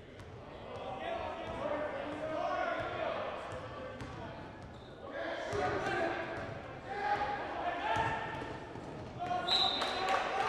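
Basketball being dribbled on a gym floor, with players and spectators shouting in the echoing gym. A referee's whistle blows shortly before the end.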